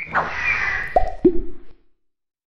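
Cartoon-style intro sound effects: a splashy rush, then two short plops about a quarter second apart, the second lower in pitch.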